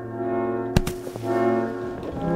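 Orchestral background music with brass, plus a single sharp struck hit a little under a second in.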